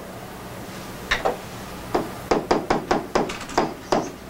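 A run of sharp taps and clicks from a stylus tapping on a tablet screen while writing: a couple of single taps, then a quick string of taps in the second half.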